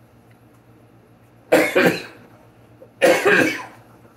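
A man coughing: two bouts, each of two quick coughs, about a second and a half apart.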